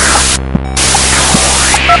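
Experimental electronic noise piece: loud static hiss over a steady electrical hum, with a soft low thump about every 0.8 seconds and the hiss cutting out briefly about half a second in. Near the end a quick run of telephone keypad (touch-tone) beeps begins.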